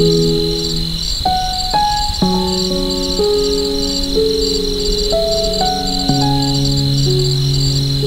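Slow, soft piano music over a steady chorus of crickets chirping in an even, pulsing rhythm.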